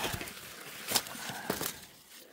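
Maize leaves and stalks rustling as they are pushed aside and handled while picking cobs, with a few sharp snaps about a second in and around a second and a half.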